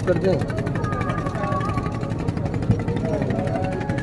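Steady low drone of the cruise boat's engine, with people's voices and some music mixed in the background.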